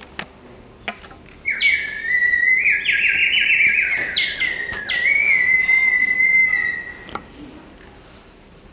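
A small handheld whistle blown to imitate a bird's call: a warbling, trilling high note that starts about a second and a half in, breaks briefly, then settles into one long steady note that stops about a second before the end.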